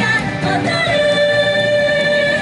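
Female pop vocal group singing live into microphones over upbeat pop backing music, with one sung note held steady over the second second.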